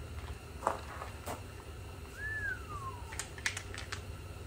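Plastic grab handle being scrubbed and handled with a rag: scattered light clicks and taps, with a quick cluster of clicks near the end. About two seconds in comes one clear high note that rises briefly and then slides down.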